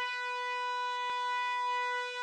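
A single steady sustained musical note, rich in overtones, held unchanged, with a faint click about halfway through.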